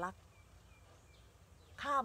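A few faint, short high bird chirps about half a second to a second in, over quiet outdoor background noise, in a pause between a woman's spoken words.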